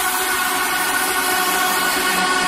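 Beatless breakdown in an electronic dance mix: a steady hissing noise wash with a few held tones and no drums or bass.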